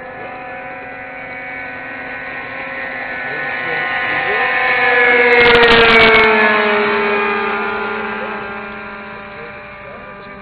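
Engines of radio-controlled WWII fighter models in flight. One plane makes a pass: it gets louder to a peak about six seconds in, its pitch drops as it goes by, and then it fades. A steadier, lower engine tone runs underneath, and there is a short crackle at the loudest point.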